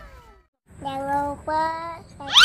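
The falling tones of a synthesized logo sound effect fade out, then a brief silence, then a young child's voice in two drawn-out, sing-song syllables.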